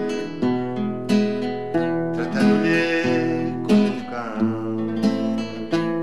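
Nylon-string classical guitar strumming chords in a slow rhythm, a new chord struck about every second and left to ring.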